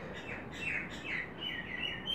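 A bird chirping in the background: a quick series of short falling chirps, about three a second, with a few thin higher notes near the end.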